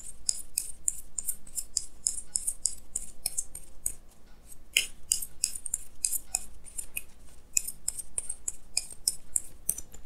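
A deck of tarot cards being shuffled by hand, an overhand shuffle giving a quick, irregular run of light papery snaps, several a second, with a brief lull about four seconds in.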